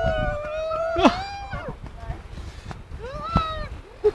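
Young men whooping in long, held yells: one drawn-out yell for about a second, a falling cry after it, and a shorter rising-and-falling whoop near the end.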